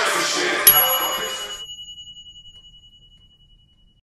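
Hip-hop music cuts off about a second and a half in. Just before, a single high bell-like ding strikes and rings on, fading slowly away.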